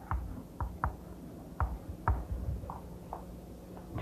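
Chalk tapping and scraping on a blackboard as letters are written: about nine short, irregular taps.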